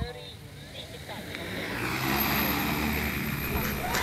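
Large multirotor agricultural spraying drone's rotors spinning up for takeoff. The whirring grows louder from about a second in as the drone lifts off, then holds steady.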